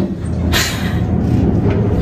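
Elevator car running: a steady low mechanical rumble, with a brief rush of noise about half a second in.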